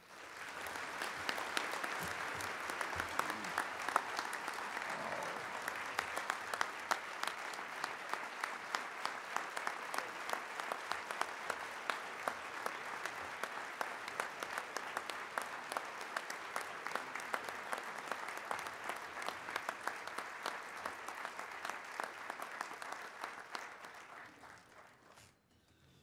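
A large audience applauding in a standing ovation: dense clapping that swells up within the first second, holds steady, and dies away about a second before the end.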